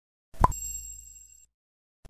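Intro logo sound effect: a quick rising pop followed by a bright ringing chime that dies away within about a second.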